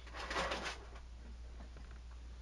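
A narrator's short breath in, lasting about half a second near the start of a pause in the reading, over a faint steady low hum from the recording.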